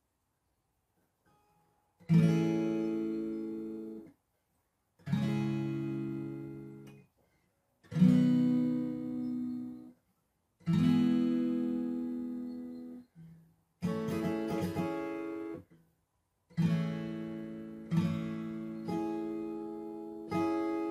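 Acoustic guitar capoed at the fourth fret: four single strummed chords, F, Am, G and C, each let ring about two seconds and then damped, starting about two seconds in. Over the last several seconds it switches to a rhythmic down-down-up strumming pattern.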